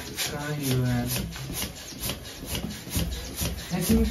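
Hand-held plastic balloon pump being worked in quick strokes, a short rasping rush of air on each stroke, about three to four a second, as it inflates a latex balloon.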